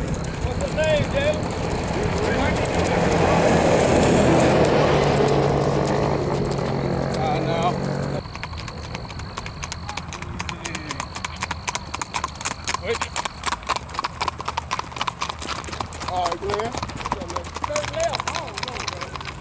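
Hooves of gaited horses ridden at the singlefoot, clip-clopping on an asphalt road in a quick, even patter, clearest in the second half. For the first eight seconds a louder steady rumble lies under the hoofbeats and then cuts off suddenly, with occasional voices in the background.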